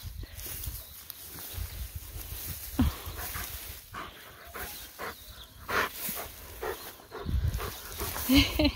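A dog making short grunting noises as it rolls on its back in grass, with the rustle of grass and fur against the ground.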